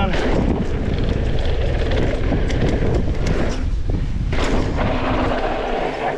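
Wind buffeting the helmet-camera microphone as a mountain bike runs fast down a dirt trail, with tyre noise on the dirt and frequent clicks and rattles from the bike over bumps.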